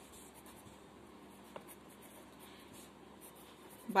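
Ballpoint pen writing on notebook paper: faint, intermittent scratching strokes as the words are written, with a small tick about one and a half seconds in.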